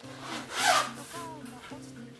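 A zipper on a small zippered case pulled open in one quick stroke about half a second in, over soft background music.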